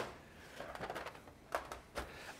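A few short knocks and clacks as flat pen cases are handled and stacked on a worktop: one sharp click at the start and two more near the end, with a faint murmur between.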